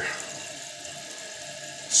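Water running steadily into a toilet tank through a Fluidmaster fill valve as the tank refills.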